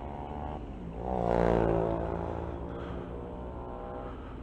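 Motorcycle engine running, heard from the rider's seat, its pitch rising briefly about a second in and then holding steady. A heavy sigh and 'oh' from the rider sits over the engine about a second in.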